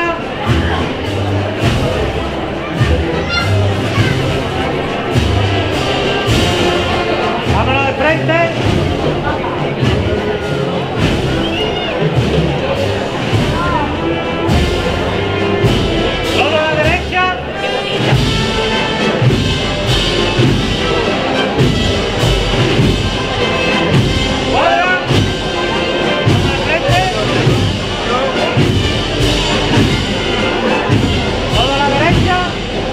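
A wind band playing a processional march, brass to the fore, with drum beats underneath.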